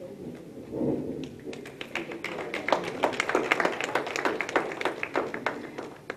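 Light, scattered hand-clapping from a small audience, starting about a second in and filling out into a patter of many overlapping claps.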